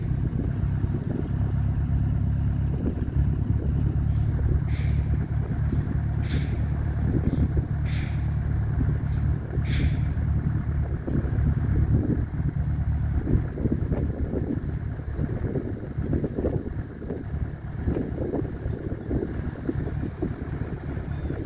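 Wind buffeting the microphone, a heavy low rumble that rises and falls in gusts, with a few brief high chirps about five to ten seconds in.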